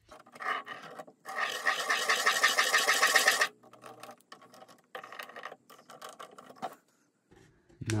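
Felt-tip marker drawn around a metal seal carrier onto gasket paper: scratchy strokes on the paper, with a squeaking stretch of about two seconds about a second in, then more short scratches and taps.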